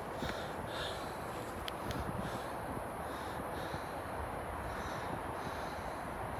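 Faint, soft rustling of brush and footsteps on a woodland trail over a steady low hiss.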